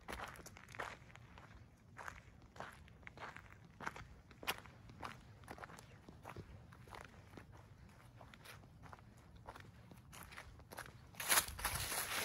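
Footsteps walking over dry grass and leaf litter at about two steps a second, getting louder near the end.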